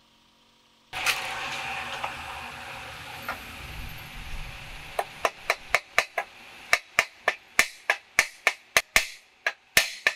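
Ball-peen hammer striking the cast metal dragon ornament on a steel blade held over a bench vise: a run of short, sharp ringing taps at about three a second, starting about halfway through. Before the taps, a rushing noise comes in suddenly about a second in.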